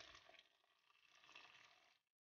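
Near silence, with a very faint trace of hot water pouring and splashing into a pot of apricots that dies away within the first half second.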